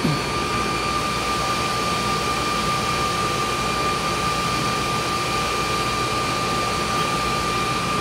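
Steady whirring hum of a running motor with a constant high-pitched whine.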